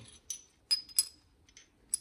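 Metal pieces of a two-stroke's three-piece exhaust power valve clinking together as they are handled: about four light metallic clicks, two of them a second apart with a short ring.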